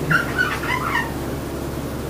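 A whiteboard eraser rubbing across the board, squeaking in a few short chirps that rise and fall in pitch during the first second.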